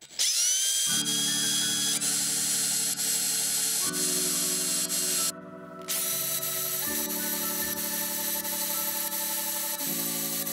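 Drill press running and boring into a planed timber fence post, a steady high whirring that spins up at the start and cuts out briefly about five seconds in. Background music with chords changing every few seconds plays over it.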